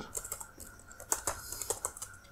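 Computer keyboard typing: a quick, irregular run of key clicks as a word is typed.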